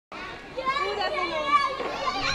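Young children's voices as they play in a sandbox: high-pitched talking and calling out.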